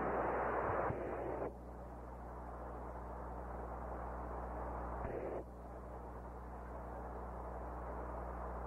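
Radio static on the Apollo 8 air-to-ground communications loop over a steady low hum: loud hiss for about the first second and a half, then quieter hiss, with another short loud surge of hiss about five seconds in. It is the open channel just after signal acquisition, while Houston waits for the crew to answer its call.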